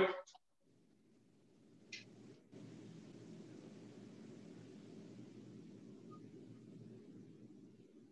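A single short click about two seconds in, as a laptop is operated, followed by a faint, steady low hum with a light hiss.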